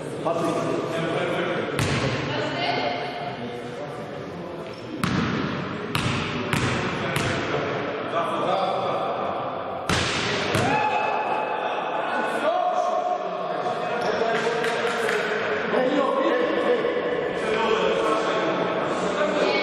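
Basketball bouncing on a gym floor, about six separate echoing thuds, the loudest near the middle, with voices calling out in a large reverberant hall.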